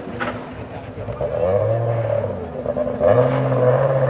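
Rally car engine accelerating on a special stage, its pitch rising, dipping briefly about two and a half seconds in, then rising again and louder near the end.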